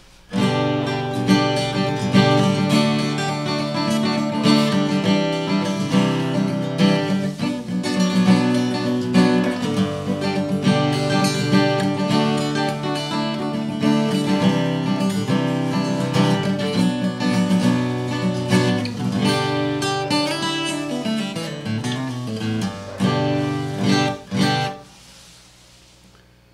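Hofma HMF250 mahogany steel-string electro-acoustic guitar, fitted with .011 strings and a bone nut and saddle, played with a 0.7 mm pick: chords strummed and picked continuously for about 24 seconds, stopping shortly before the end.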